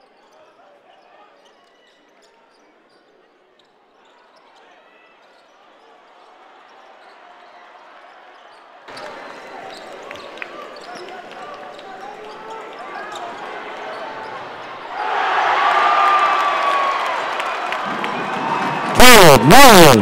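Basketball game in an arena: a dribbled ball bounces under crowd noise that builds steadily, then the crowd cheers loudly from about fifteen seconds in. Near the end a loud amplified voice calls out over the cheering.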